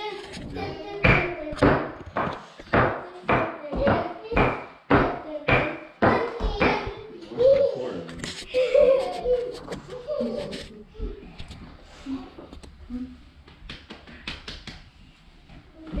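Young girls' voices chanting in a steady rhythm of about two syllables a second, with thuds mixed in; the chant stops about seven seconds in, giving way to a few drawn-out vocal sounds and then fainter scattered knocks.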